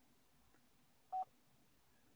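A single short electronic beep from the Chevy Bolt EV's infotainment touchscreen about a second in, acknowledging a button press on the charging settings page. Otherwise near silence.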